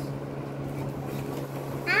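A steady low hum of room background, with a child's high-pitched voice starting right at the end.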